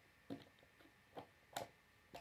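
A few faint, sharp clicks of plastic Lego bricks being handled and pressed into place.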